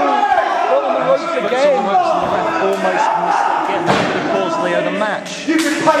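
Small crowd shouting and yelling in a hall. A few heavy thuds of bodies hitting the wrestling ring are heard, the strongest about four seconds in and near the end.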